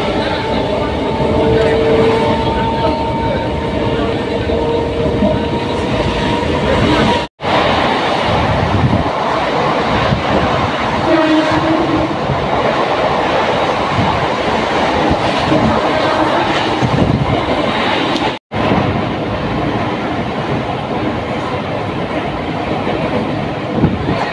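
Passenger train running at speed, heard through an open window: a steady rumble and rattle of the wheels on the track, with a faint steady tone during the first several seconds. The sound drops out for an instant twice where the footage is spliced.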